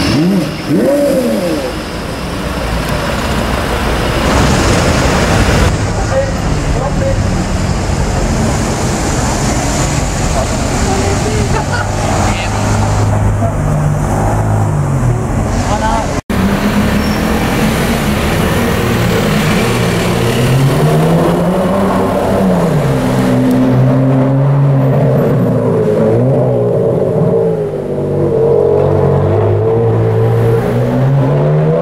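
Porsche Carrera GT's V10 engine running in slow traffic and being revved, its pitch rising and falling again and again, most clearly after a cut about 16 seconds in.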